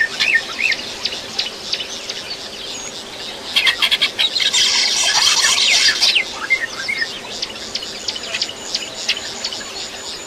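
A dense chorus of many short, high chirping calls from wild animals. It swells to a loud burst from about three and a half to six seconds in, and thinner calling carries on around it.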